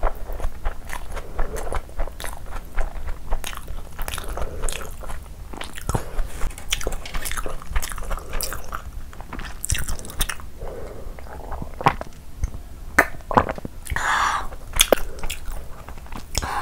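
Close-miked chewing of a large mouthful of chicken biryani eaten by hand: wet, sticky mouth sounds with frequent sharp clicks throughout.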